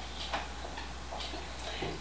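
A few faint, irregular clicks over a steady low hum.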